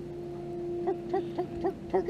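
Electric bow-mount trolling motor running with a steady hum. In the second half, a run of five short rising notes comes at about four a second.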